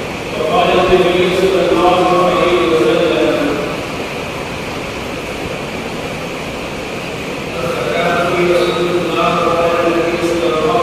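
A man's voice chanting into a microphone in long, held melodic phrases, in the manner of an Arabic invocation to God, with a pause of a few seconds in the middle.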